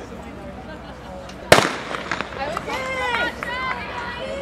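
A starting gun fires once, sharp and loud, about a second and a half in, starting an 800 m race. Spectators then shout and call out encouragement.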